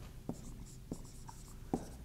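Marker writing on a whiteboard: a few quiet short taps and strokes, with a brief faint squeak of the tip midway.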